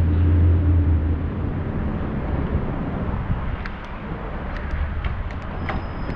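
Rushing wind and tyre noise from a bicycle ridden over alley pavement, picked up by a camera riding along with it. A low steady hum fades out about a second in, and scattered light clicks and rattles come through in the second half.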